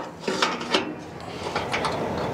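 Light aluminum trailer ramp and its latch pins being handled: a few sharp metallic clinks and knocks, with a spell of rubbing in between.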